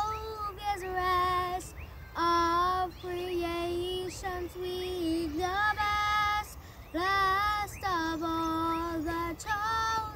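Young girl singing an old Sabbath hymn solo, in phrases of long held notes with short breaths between them.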